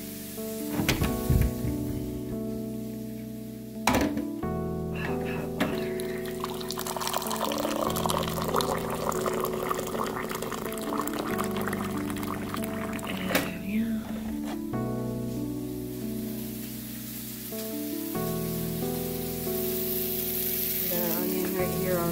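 Water running into a glass measuring cup for several seconds in the middle, with two sharp knocks from handling shortly before. Background music plays throughout.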